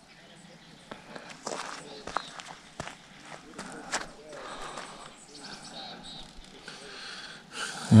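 Quiet outdoor ambience with faint voices in the distance and a few scattered clicks and scuffs.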